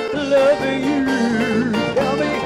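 Live band playing a dance number, a wavering lead melody line over drums, bass and keyboard accompaniment.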